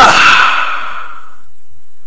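A breathy sound like a sigh or exhale, fading out over the first second, then a pause with almost nothing heard.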